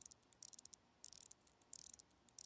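Pocket watch being wound by hand: the crown turned in short strokes, each giving a quick cluster of faint ratcheting clicks, about every two-thirds of a second.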